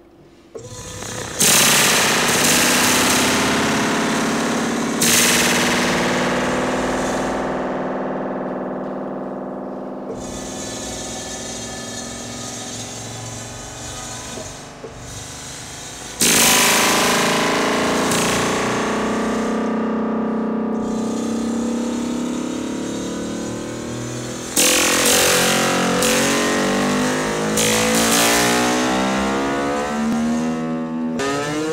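A long amplified steel wire is plucked by a bolt on a moving model train's pantograph, twanging like a very long guitar string. A few plucks ring out with slowly fading overtones, with one long ring lasting over ten seconds in the middle. Several plucks follow close together near the end, their tones bending in pitch.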